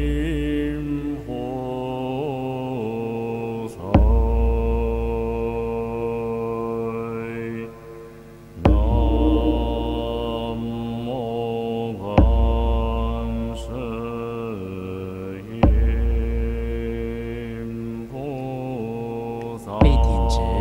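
Buddhist chanting sung in long, slowly bending melodic lines, with a deep struck beat about every three and a half seconds, like a large temple drum keeping time. The voices break off briefly about eight seconds in.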